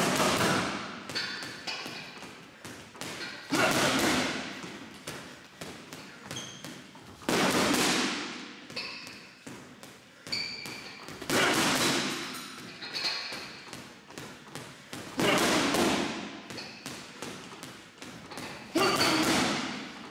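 Boxing gloves striking a hanging heavy bag: a steady run of light punches, broken about every four seconds by a loud burst of hard power punches, each ringing out briefly in the room.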